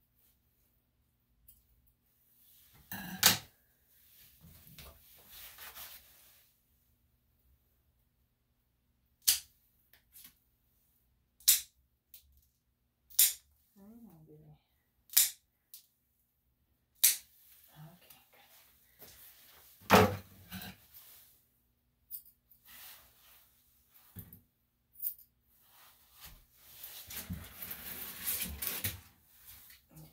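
Dog nail clippers snapping through a small dog's nails one at a time, a sharp snap every second or two, with soft handling rustle in between.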